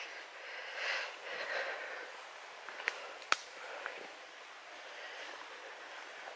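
Quiet woodland ambience: a faint steady hiss with a few soft rustling swells, and two sharp clicks close together about three seconds in.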